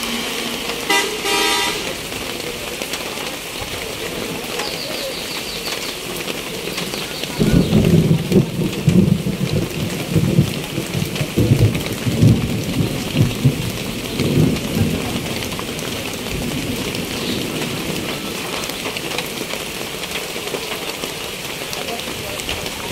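Heavy rain falling steadily on a tin roof, a tarp awning and a wet road. A vehicle horn sounds briefly about a second in, and from about seven to fifteen seconds in a run of irregular low rumbling thumps rises above the rain.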